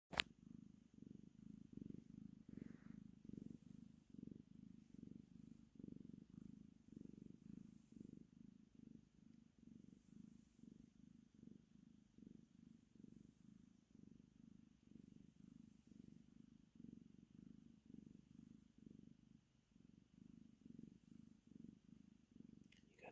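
Domestic tabby cat purring: a faint, low, continuous purr that swells and fades in an even rhythm of about two pulses a second. A single sharp click at the very start.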